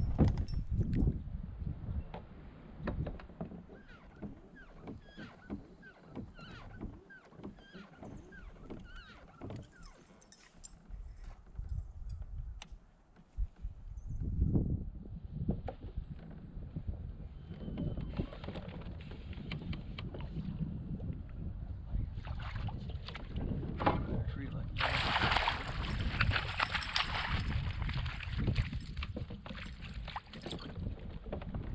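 A hooked largemouth bass splashing at the surface beside a kayak as it is fought to the boat, loudest in a burst of splashing near the end, over a steady low rumble.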